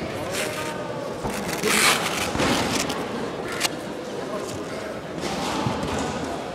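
Indistinct voices and chatter in a large sports hall, with a brief hissing burst about two seconds in and a sharp click a little past halfway.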